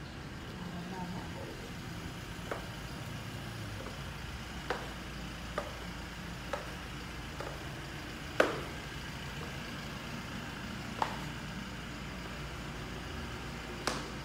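Footsteps on a bare concrete and tile floor: a series of sharp taps, irregularly about a second apart, the loudest a little past the middle, over a steady low hum.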